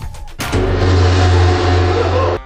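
Dramatic film background score: a few short hits, then about half a second in a loud, sustained bass-heavy blast of sound that holds and then cuts off.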